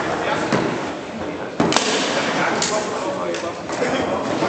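Table football play: a few sharp knocks of the ball and rods, the loudest about one and a half seconds in.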